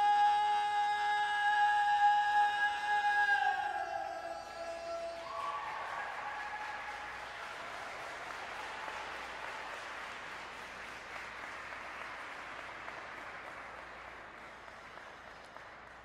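Figure skating program music ends on a long held note that slides downward about four seconds in, followed by audience applause that slowly fades away.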